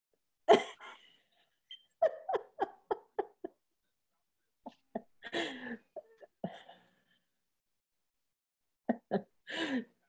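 A person laughing in short, separate bursts, a quick run of about six of them a couple of seconds in, heard over a video-call line that cuts to dead silence between the bursts.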